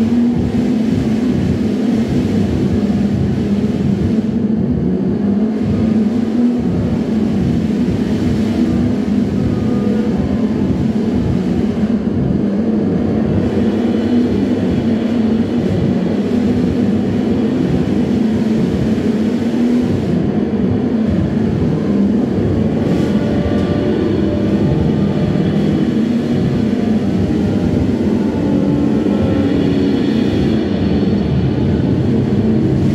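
Loud, steady, dense low drone of electronic noise from a modular synthesizer rig played live in an improvised set. Faint higher wavering tones come in over it in the second half.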